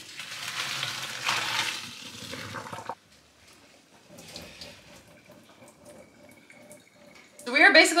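Water pouring into a kitchen sink as a pot of cooked pasta is drained: a loud, even rush for about three seconds that stops suddenly, followed by a much quieter hiss.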